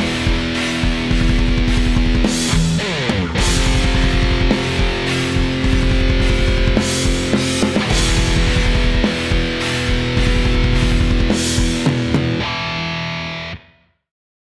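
Heavily distorted SG electric guitar playing a slow doom-metal riff of power chords moving by a minor second, with a sliding chord change about three seconds in. The last chord rings on and fades out near the end.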